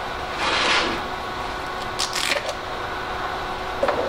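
A steady fan-like hum from the powered-on inverter welder, with brief rustling and clicking as gloved hands work at the welder and the electrode shelf, once about half a second in and again about two seconds in.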